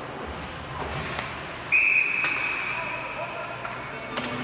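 Ice hockey referee's whistle: one shrill blast a little under halfway through that stops play for a penalty the referee has signalled with a raised arm. The blast starts loud and its tone trails on weaker. A couple of sharp knocks come around it.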